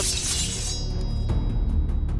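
Many steel sabres drawn at once: a bright metallic ring that fades within the first second. Dramatic score music with a low drumming pulse runs underneath and carries on after it.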